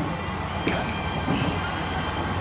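Running noise of a passenger train heard inside the carriage: a steady low rumble from the wheels and car body, with one sharp click about a third of the way in.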